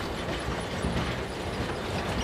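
Conveyor belts and processing machinery at an open-pit mine running with a steady rumble and rattle.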